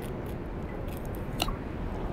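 Chef's knife slicing through a small mackerel to fillet it, with soft crunching and small clicks as the blade cuts along the bones, and one sharper click a little after halfway.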